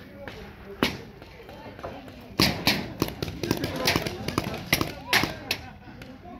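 Paintball gunfire: one sharp pop a little under a second in, then a string of irregular pops and smacks, several close together, from about two and a half seconds in. Faint distant shouting runs underneath.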